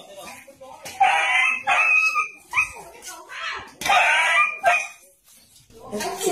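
A dog yelping and crying out in distress: several separate high-pitched cries with short pauses between them.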